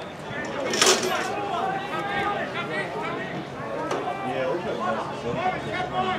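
Indistinct voices of people talking and calling over one another, no words clear, with one sharp knock just under a second in.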